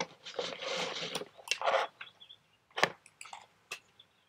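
Rustling and crinkling of the gaming mouse's packaging as it is handled, with a few sharp clicks and taps. The crinkling comes in the first two seconds and the scattered clicks later on.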